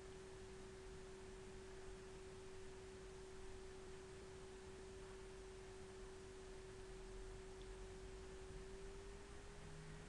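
Near silence: faint background hiss with a single steady tone that rises slightly in pitch near the end.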